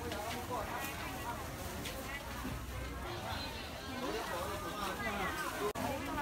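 Background voices of people talking at market stalls, several speakers overlapping in a steady chatter.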